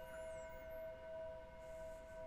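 Faint background music: a sustained, bell-like ringing drone with several steady overtones, wavering slowly in loudness.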